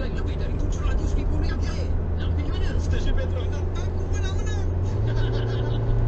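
Car engine and road noise heard inside the cabin as a steady low drone, its pitch stepping up about five seconds in, with people talking over it.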